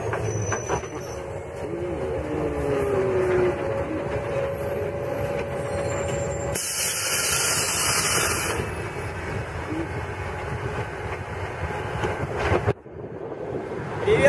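Running noise heard from inside a public-transport vehicle on the move: a steady rumble with a whine that rises and falls over the first few seconds. About halfway through comes a two-second burst of high air hiss.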